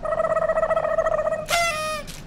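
A held, steady-pitched musical tone with a fast flutter. About one and a half seconds in it gives way to a short, brighter tone that falls in pitch.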